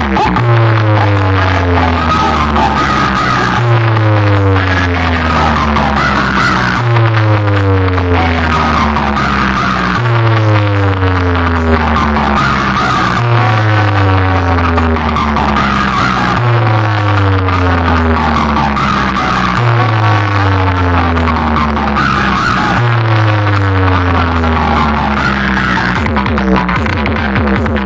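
Loud DJ sound-check music played through a large box-speaker stack. A deep bass tone sweeps downward in pitch and repeats about every three seconds.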